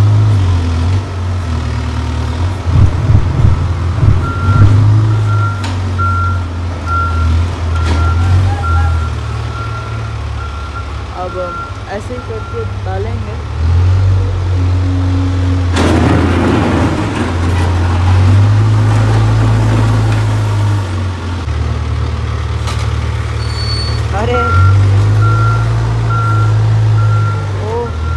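Case 570T backhoe loader's diesel engine running loud and changing speed as it works, with its reversing alarm beeping steadily from about five seconds in until about thirteen, and again in the last few seconds. There is a short, loud rush of noise just past halfway.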